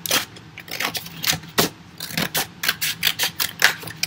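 Scissors snipping through a folded paper plate, a run of short irregular cuts that come faster in the second half.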